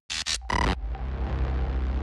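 Sound effects in a hip-hop mix's DJ intro: three short, harsh, pitched bursts in the first second, then a steady low droning bed with heavy bass.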